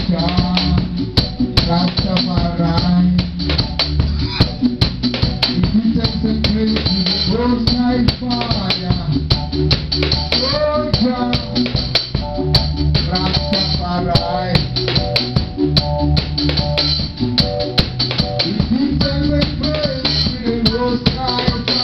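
A live band playing: a drum kit with regular sharp cymbal and drum strikes over a steady bass line, with a melodic line moving above.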